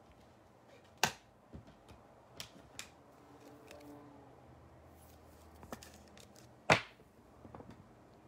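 A few soft clicks and taps from handling a trading card and a clear plastic card holder, one click louder a little before the end.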